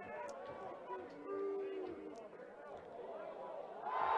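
Faint live match sound from a football ground: scattered voices shouting and calling, with one longer held shout or chant after the first second.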